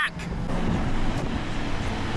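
Ford diesel pickup truck under way, heard from inside the cab: steady engine and road noise.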